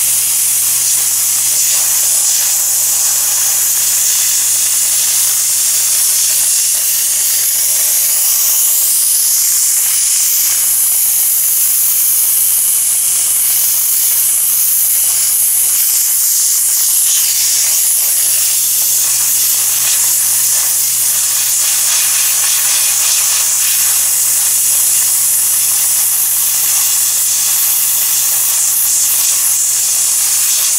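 Handheld sandblaster blasting rust off a steel car door panel: a loud, steady hiss of compressed air and abrasive grit, with a faint steady low hum underneath.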